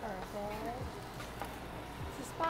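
Quiet pause: a faint voice sounds briefly in the first half over a low, steady background hum.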